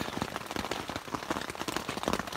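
Heavy rain pattering on a tent's rain fly, heard from inside the tent: a dense, steady patter of drops.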